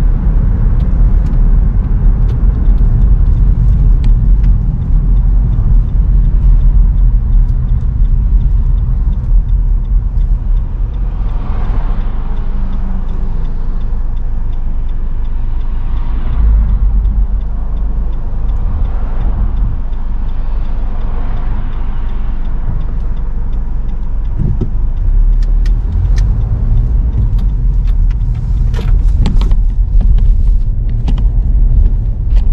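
Road noise inside a moving car's cabin: a steady low rumble of engine and tyres, with a few brief swells of louder noise around the middle and some light clicks near the end.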